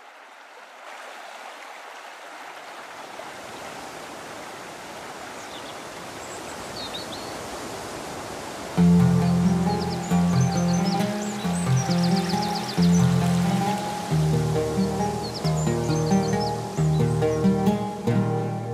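A shallow stream running over pebbles fades in gradually, with a few faint high chirps above it. About nine seconds in, instrumental music cuts in much louder, with a steady pulse of low notes.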